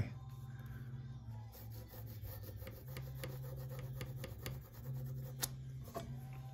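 Pencil scratching along the top of a wooden blank as a centre line is drawn with a centre-finding gauge, a faint dry rubbing made of fine ticks, over a steady low hum. A single sharp click comes near the end.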